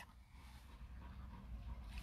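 Near silence: a faint low rumble of background room tone, swelling slightly in the second half.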